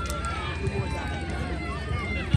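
Indistinct outdoor chatter: several people talking at once, voices overlapping, with no words standing out.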